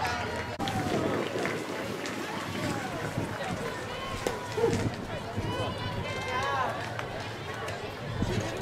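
Scattered voices of spectators and players calling and talking at a distance, with no one clear speaker.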